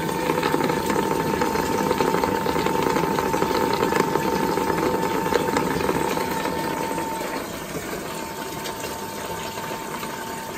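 Water gushing from a tap into a half-full tank, fed by a Salamander HomeBoost mains booster pump that is running with a steady whine over the splashing. The sound drops in level about seven seconds in.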